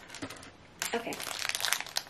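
Crinkly purple wrapper of a toy charm packet crinkling as it is handled and pulled open, a dense crackle starting about a second in.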